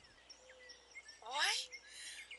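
Birds calling in woodland: a few faint short chirps, then one louder call that sweeps down in pitch about a second and a half in.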